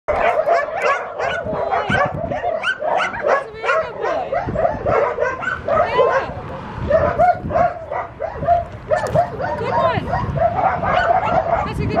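Small puppy on a leash yelping and whimpering in a continuous string of short, high cries.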